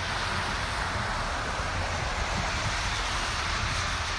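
A steady rushing noise with a low hum underneath, starting and stopping as a block around the shot.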